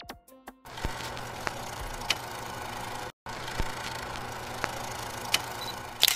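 The song's last plucked notes die away. Then a logo-sting sound effect follows: a steady noisy hum with a few sharp glitchy hits, a short cut-out about three seconds in, and a loud hit at the very end.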